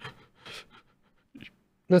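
A faint breath or exhale close to a headset microphone about half a second in, then a man's voice begins speaking right at the end.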